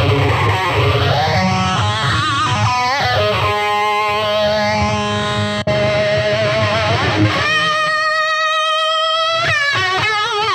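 Electric guitar played through a Peavey Vypyr 15 digital modelling amp with one of its built-in modulation effects on: the first few seconds swoosh up and down over the notes, then single notes are held with a wavering pitch. Near the end the pitch dips and comes back.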